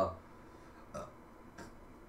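Quiet room tone in a pause in a man's reading, broken about halfway by one brief, short throat sound.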